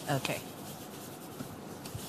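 Gloved hands rubbing together, a soft, steady rubbing with no distinct knocks.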